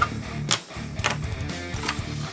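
Three sharp clicks about half a second apart as small plastic Micro Machines toys are handled, over quiet background music.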